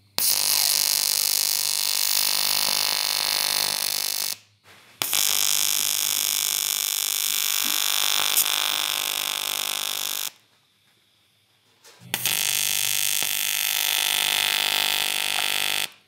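AC TIG welding arc on 3 mm aluminium sheet, buzzing steadily while the parts are tack-welded, in three runs of about four to five seconds each with short pauses between them.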